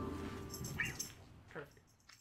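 The band's last chord, led by the Hammond organ, fading out, with two brief squeaky sounds during the fade, the second sliding down in pitch.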